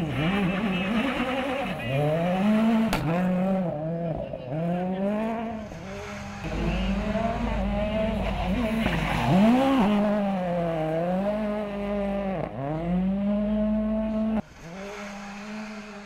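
Ford Fiesta RRC rally car's engine revving hard and repeatedly, its pitch climbing under acceleration and dropping sharply at each gear change or lift, with tyres squealing as the car slides through corners. The sound drops away abruptly near the end.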